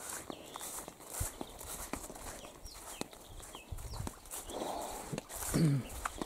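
Footsteps of a person walking across a grassy yard: soft, irregular thuds with a few louder knocks.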